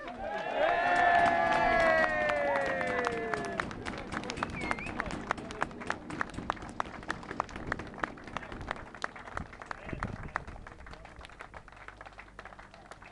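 A group of voices giving one long cheer that falls in pitch, then a small crowd clapping steadily for the rest, fading toward the end.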